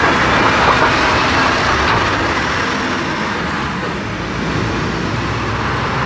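Road traffic running close by, very noisy: a lorry's engine and tyres are loudest at the start, then ease off a little over the next few seconds.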